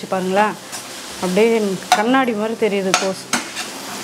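A perforated steel spoon stirs and tosses shredded cabbage in a stainless-steel pan over a steady sizzle, scraping the pan and clicking sharply against it a few times in the second half. A pitched, voice-like sound comes and goes with the stirring.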